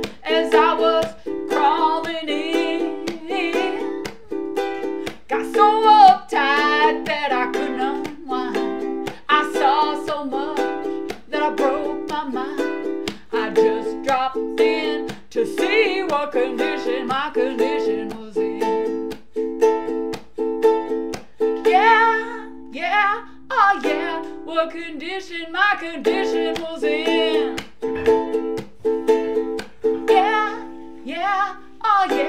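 Ukulele strummed in a steady rhythm of chords, with a woman singing over it.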